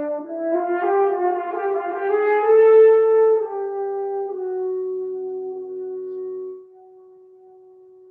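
Solo French horn playing a quick run of notes that climbs to a loud peak, then settles on a long held note that drops suddenly much softer about two-thirds of the way through and carries on quietly.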